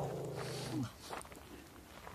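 A single low-pitched vocal sound, loud at the start and held for about a second, ending in a short falling glide.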